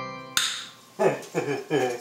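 The show's theme music stops, and a single sharp click follows just under half a second in. From about a second in comes a man's short, repeated laughter.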